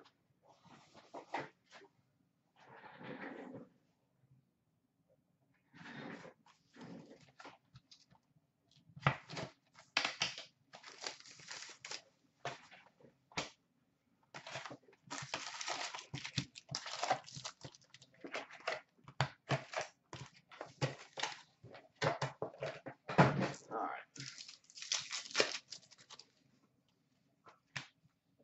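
A sealed SP Authentic hockey card box being unwrapped and opened: the wrapper tears and crinkles, then the foil packs rustle as they are lifted out and stacked. The crackling starts sparse and becomes a dense run from about nine seconds in.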